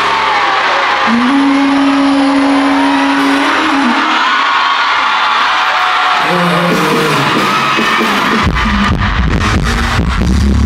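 Live concert: a large audience singing along and cheering over a single held note, then a heavy bass beat with drums comes in about eight and a half seconds in.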